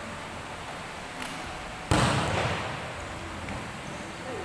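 A volleyball is struck hard in a spike: one loud smack a little under two seconds in, ringing on briefly in the echoing hall.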